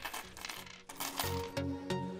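Loose nickels clinking and jingling against each other as a roll of nickels is emptied onto a table. Just over a second in, electronic background music with a steady beat starts and carries on.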